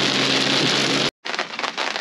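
Heavy rain pelting a four-wheel drive's windscreen and roof, heard inside the cabin over the engine's steady hum. This cuts off sharply about a second in, giving way to a lighter, crackling patter of rain on a canvas awning.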